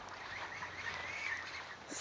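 Faint outdoor ambience with a few soft, distant bird calls.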